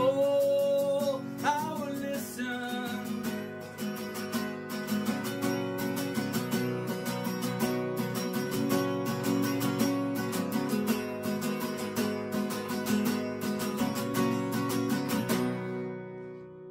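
A man's held sung note and a brief vocal slide in the first two seconds, then steady strummed acoustic guitar. The song ends shortly before the end, with the last chord left ringing and fading.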